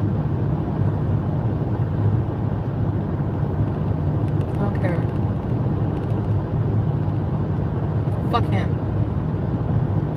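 Car cabin noise while driving: a steady low rumble of engine and road. A short voice sound comes about halfway through and another near the end.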